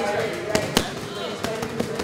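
Boxing gloves smacking into focus mitts in quick pad-work combinations: two sharp hits about half a second in, the second the loudest, then two lighter hits near the end.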